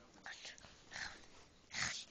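A young child's faint whispering and breaths, in four or five short bursts.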